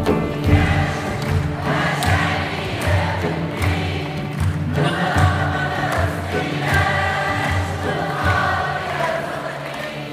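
Live concert music: many voices singing together over an instrumental ensemble with a sustained low accompaniment.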